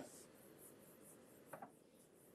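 Near silence, with faint scratching of a stylus moving on a tablet screen and a soft tap about one and a half seconds in.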